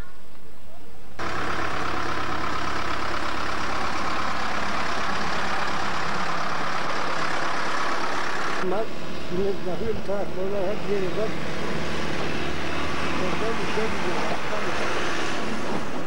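Farm tractor engine running close by, loud and steady, starting abruptly about a second in. From about halfway its sound turns duller and men's voices talk over it.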